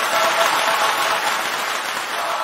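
Applause: dense, steady clapping with faint held notes beneath it.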